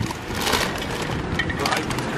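Plastic crisp packets crinkling as a shopping bag full of them is handled, most clearly in the first half-second, with a car driving by near the end.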